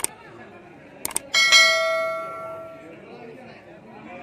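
Subscribe-button sound effect: sharp mouse clicks, then a bright bell ding that rings out and fades over about a second and a half.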